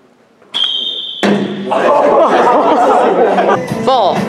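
A short, steady, high-pitched electronic beep of under a second. It is followed by loud, overlapping voices of a group, with music coming in underneath them.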